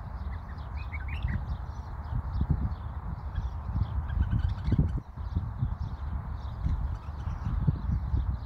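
Bulbuls chirping and twittering in short high notes, with a brighter run of rising chirps about a second in, over a louder, irregular low rumble with thumps.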